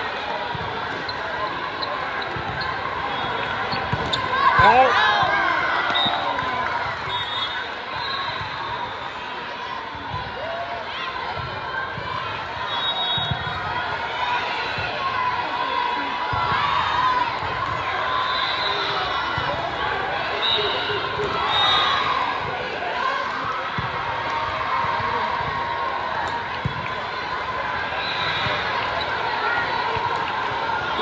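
Indoor volleyball play in a large sports hall: a steady din of overlapping players' and spectators' voices, with shoes squeaking on the court and scattered thumps of balls being hit and bounced. A louder shout rises out of it about four seconds in.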